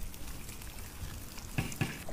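Eggs frying on a hot flat metal griddle over a fire: a steady sizzle with scattered crackles and two sharper pops near the end.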